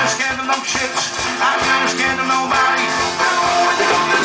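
A live band playing a rock song on drum kit and electric bass guitar, with a steady beat and pitched melodic lines over it.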